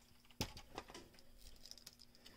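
Faint handling noise: one sharp click about half a second in, then a few light ticks and rustling, over a faint steady hum.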